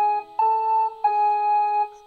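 A short three-note phrase on a keyboard, each note held evenly without fading, the middle note a little higher than the other two.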